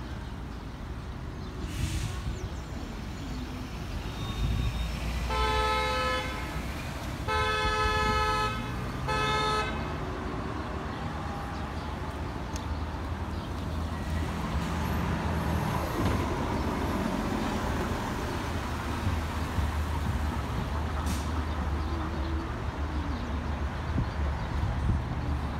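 A car horn honks three times in the middle of the clip, two long blasts and then a short one, over steady street traffic. A vehicle passes a few seconds later.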